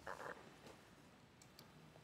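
Near silence with a few faint clicks, as council members press their electronic vote buttons. There is a brief faint sound right at the start.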